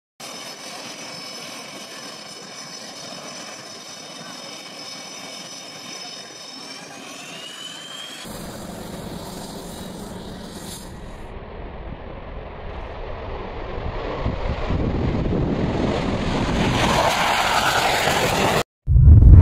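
Jet engines. First a steady high turbine whine of several tones that climb about seven seconds in. After a cut comes a jet's rumble that grows steadily louder towards a takeoff.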